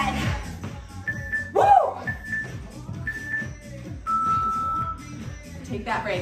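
Workout interval timer beeping: three short beeps a second apart, then one longer, lower beep, over background dance music. It is the countdown marking the end of a work interval.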